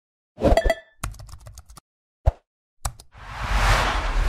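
Animated logo sting sound effects: a bubbly plop, a quick run of clicks, two sharp ticks, then a swelling whoosh near the end.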